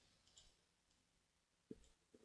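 Near silence with two faint computer mouse clicks: a very slight one under half a second in and a sharper one near the end.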